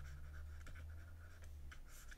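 Faint scratching and light tapping of a stylus writing and underlining words on a tablet.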